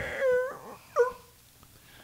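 A man's voice imitating tyres squealing as a skidding bus slides: two high, drawn-out squeals, the second short and dropping in pitch about a second in.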